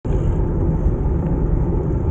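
Wind buffeting an Insta360 camera's microphone on a moving bicycle, mixed with tyre rumble on asphalt: a loud, steady low rumble.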